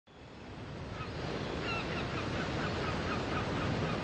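Intro of a Brazilian funk automotivo remix: a rushing noise fades in over the first second, with a rapid run of short, high chirping calls over it.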